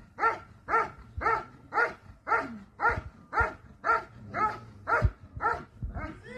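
A protection-sport dog barking steadily at the helper holding the bite sleeve, about two loud barks a second, evenly paced. This is the hold-and-bark, where the dog guards the helper by barking without biting.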